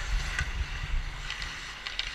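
Ice hockey skate blades hissing and scraping on the ice as the wearer of the camera skates, with a few sharper scrapes, under wind rumble on the moving microphone.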